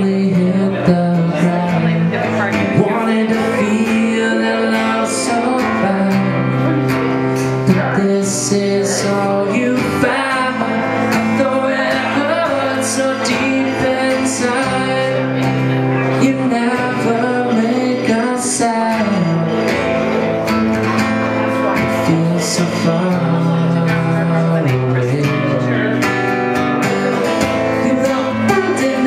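Acoustic guitar strummed steadily, with a man singing over it in a slow song.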